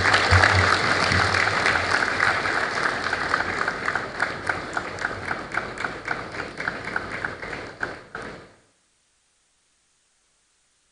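Audience applauding a guest onto the stage, many individual claps that thin out and fade, then cut off abruptly about eight and a half seconds in.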